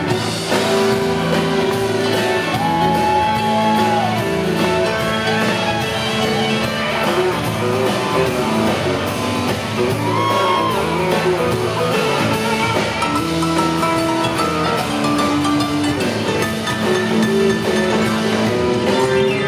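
Live country band playing an instrumental break with drums, bass, electric guitar, fiddle and strummed acoustic guitar. A few long lead notes are held and bent in pitch.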